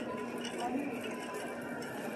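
Steady background noise of a large store's interior: a low hum with a faint steady tone and faint distant voices.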